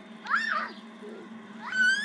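A young child's high-pitched squeals on a spinning chain swing carousel: two short arched cries, one about half a second in and a longer one near the end, over a steady low hum.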